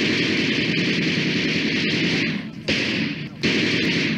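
Automatic gunfire sound effect: one long burst of about two seconds, then two shorter bursts.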